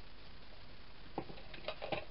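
A few light clicks and taps from hands handling card and a paper strip of glue dots on a craft mat: one about a second in, then two close together near the end.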